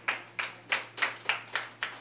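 A few people clapping: distinct, evenly spaced hand claps, about three a second, with a short ring of the room after each.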